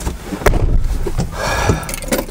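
Knocks and handling noise inside a vehicle cabin over a low rumble, with one sharp click about half a second in.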